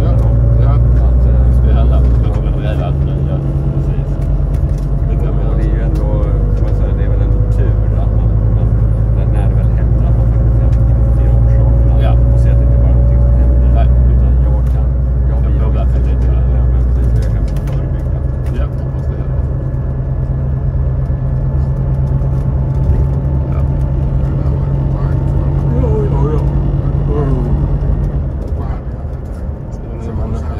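Bus engine and drivetrain under way, heard from inside the passenger cabin: a loud low drone that shifts in pitch about two seconds in and again midway, with a faint gliding whine above it.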